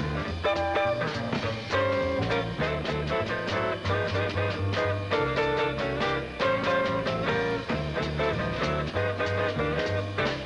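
Small jazz combo of electric archtop guitar, upright bass and drums playing a swing tune, the guitar picking single-note lines over a bass line that steps from note to note.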